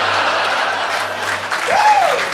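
Live audience applauding and cheering, with one voice rising and falling near the end.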